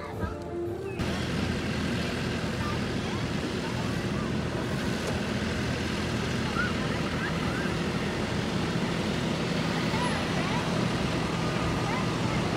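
Farm tractor engine running steadily as it pulls a hay wagon, a low even hum under a wash of wind-like noise, with faint distant voices.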